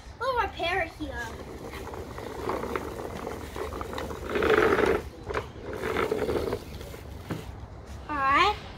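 Large plastic toy dump truck pushed by hand over rough concrete, its plastic wheels rolling and scraping, loudest about four to five seconds in and again around six seconds.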